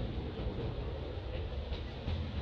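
Steady background noise: a low, fluttering rumble under a hiss, with no animal calls.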